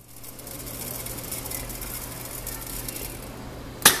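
Seed weigh-filler running: its vibratory feeder trickles small seeds into a stainless steel weigh hopper with a steady, fine rattling hiss. Near the end comes a single sharp clack from the machine.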